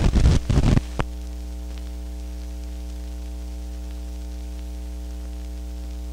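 Steady electrical hum with a stack of overtones, the hiss and hum of an old film soundtrack under countdown leader, with a brief flurry of crackles and pops in the first second.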